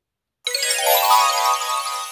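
A short, bright chime jingle sound effect marking a page turn. It starts suddenly about half a second in and fades away slowly.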